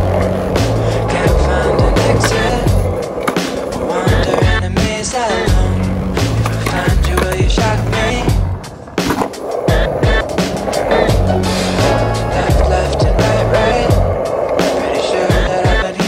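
Skateboard wheels rolling on asphalt, with sharp clacks and knocks of the board, mixed with a music track carrying a steady repeating bass line. The rolling drops out briefly a little before the middle and picks up again.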